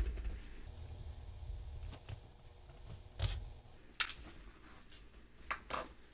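Faint fiddling and a few sharp metallic clicks as a push pin pries a tiny C-clip off the clutch shaft of a Super 8 film scanner. The clip snaps free near the end.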